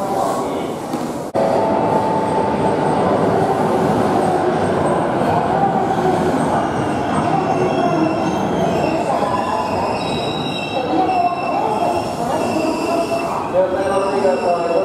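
Electric commuter train running at the platform, a loud steady rumble with high squealing tones from the wheels on the rails. The sound breaks off sharply about a second in and resumes.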